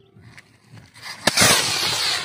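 A large firework rocket launching: a sharp click just over a second in, then a loud rushing hiss as its motor burns and it climbs away, carrying a kite.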